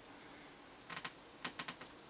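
Faint clicks in a quiet room: a quick cluster about a second in and a few more, a fraction of a second apart, near the end.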